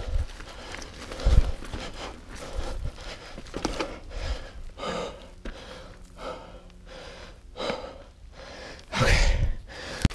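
Mountain bike tyres rolling and crunching through dry leaf litter and over rock, with the rider breathing hard in short, repeated breaths. Heavy low thumps from the bike hitting bumps about a second and a half in and again, loudest, near the end.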